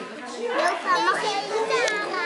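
Young children's voices chattering in a room, several high-pitched voices overlapping, louder about a second in.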